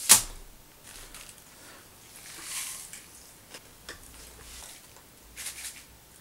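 A packet of Pop Rocks candy being handled and tipped into the mouth: one sharp click at the very start, then a soft rustling pour swelling about two seconds in, with a few faint ticks after.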